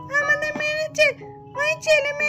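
Background music with held instrument notes under a very high-pitched, childlike voice that rises and falls in quick phrases.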